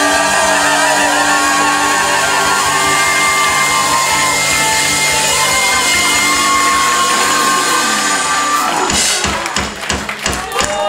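Live ska-punk band with trumpet and trombone playing long held notes over drums, closing out the song. About nine seconds in, the held sound breaks off into a few loud hits.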